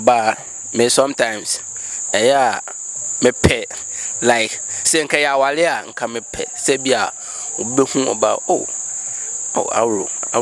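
A chorus of crickets calling in a steady, unbroken high-pitched band, under a man's voice talking.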